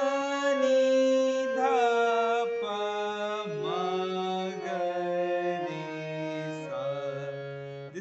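Harmonium playing the descending sargam scale, sa ni dha pa ma ga re sa: about eight notes stepping down one by one, each held about a second, with a man's voice singing the note names along with the reeds.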